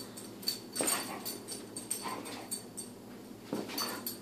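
A pit bull's paws and claws scuffing and thumping on carpet in four or five short bursts as she pounces at a laser dot.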